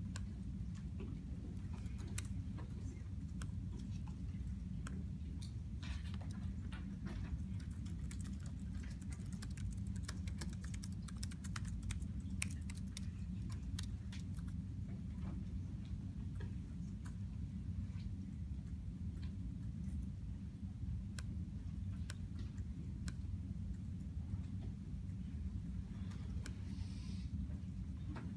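Laptop keyboard typing: quick, irregular key clicks that come thickest in the middle stretch and thin out later, over a steady low hum.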